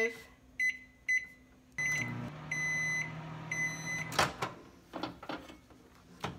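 GE countertop microwave: three short keypad beeps as the time is entered and the oven started, then the oven running with a steady low hum. Two longer beeps sound as the cycle finishes, and the door clicks open a little after four seconds in.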